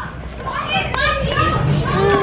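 Children's voices and play noise, chattering and calling, over a steady low hum.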